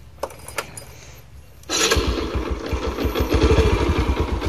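Yamaha Sirius 110cc single-cylinder four-stroke engine being started: a few light clicks, then about two seconds in it catches and settles into a steady, fast idle.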